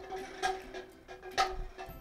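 Red plastic cups being knocked off a metal table by air from a balloon, with two sharp clicks of cups tipping and landing, about half a second in and again near one and a half seconds.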